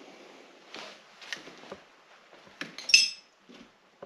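A few light knocks and rattles, then a sharp clink with a short ring about three seconds in: hard, brittle debris such as glass or porcelain knocked together.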